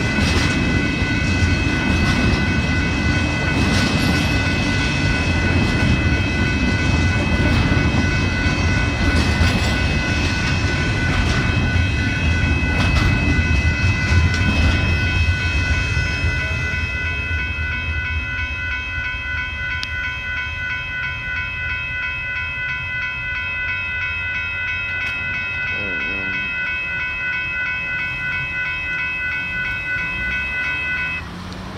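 Double-stack intermodal freight cars rolling past on steel wheels, a loud low rumble, with the grade crossing's warning bell ringing steadily throughout. About halfway the last car clears and the rumble fades, leaving the crossing bell ringing on its own.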